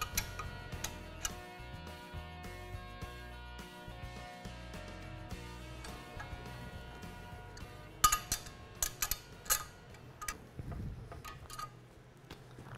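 Background music with held tones; about eight seconds in, a quick run of sharp metallic clicks and clinks, an adjustable wrench knocking on the steel nuts and bracket as the nuts are snugged down.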